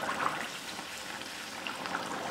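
Buñuelo batter frying in hot oil in a pan: a steady sizzle with small crackles.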